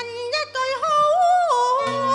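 A singer holds a long, wavering wordless vowel in Cantonese opera style, the pitch stepping upward and then dropping about one and a half seconds in, over instrumental accompaniment.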